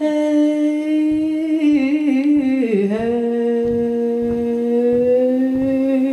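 A woman's voice holding a long hummed note into a microphone, stepping down to a lower pitch about halfway through. Underneath it runs a steady beat of low thumps from the audience stomping along.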